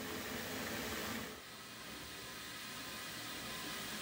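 Bath tap running into a tub of bubble bath, a steady hiss that drops a little in level about a second and a half in.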